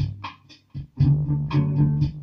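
Ibanez SZ320 electric guitar through a Roland Micro Cube amp: low notes ring and fade away, then a new low note starts sharply about a second in and sustains.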